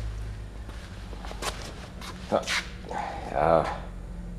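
A dog gives a short whine that bends up and down near the end, over a steady low hum, with a few brief sharp sounds before it.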